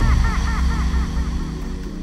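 Electronic background music with the beat dropped out: held low synth notes under a run of quick, repeated chirping blips, about five a second, that fade away.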